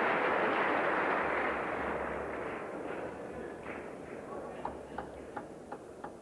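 Audience applause that fades away over the first three seconds, followed by a handful of short, sharp ticks of a table tennis ball bouncing as play resumes.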